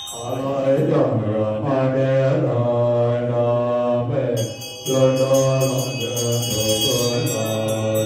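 Buddhist lamas chanting a mantra together in low, sustained voices, with a short break a little past halfway. From about halfway, hand bells ring rapidly over the chant.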